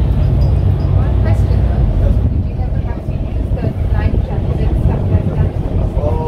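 Small passenger boat's engine running, a steady low rumble, with indistinct voices over it.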